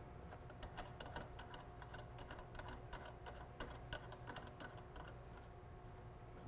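Faint, irregular light clicks and ticks as the cartridge nut of a GROHE GrohSafe 3.0 shower valve is turned by hand and unthreaded from the brass valve body; the clicks thin out near the end.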